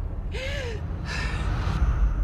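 A young woman breathing hard: two heavy breaths, the first with a short voiced gasp, over a low rumbling drone in a film trailer's soundtrack.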